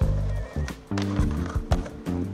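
Background music with a steady bass line, with skateboard wheels rolling over stone paving mixed in under it.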